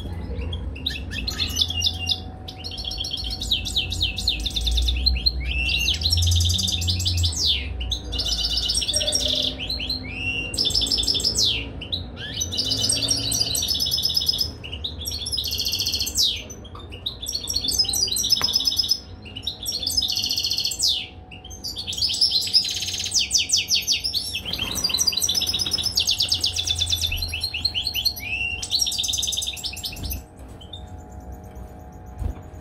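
European goldfinch singing: bursts of rapid, liquid twittering and trills, each phrase a second or two long with short pauses between, repeated throughout.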